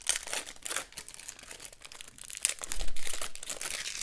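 A trading card pack wrapper being torn open and crinkled by hand: irregular crackling and rustling, loudest about three quarters of the way through.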